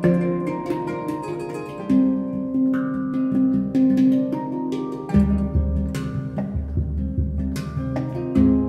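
Kora and handpan playing a duet: the kora's plucked strings and the handpan's struck notes. About five seconds in, deep low notes come in repeatedly.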